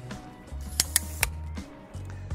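Three light clicks of a Slik Sprint Pro tripod's aluminium centre-column parts being handled and taken out, close together about a second in, over quiet background music.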